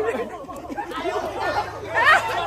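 Several people chattering and calling out over one another, no single clear speaker.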